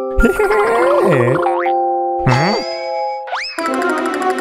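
Cartoon background music with comic springy boing sound effects: wobbling, swooping pitch sweeps about a second in and again past two seconds, then a quick upward slide in pitch near the end.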